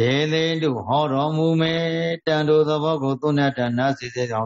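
A Buddhist monk's voice chanting in long, held, intoned notes, starting suddenly after a pause and broken by two short breaths.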